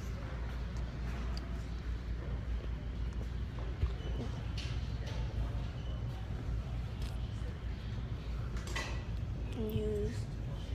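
Handling noise from a hand-held phone as its holder walks: a steady low rumble with scattered faint knocks. Faint voices sound in the background.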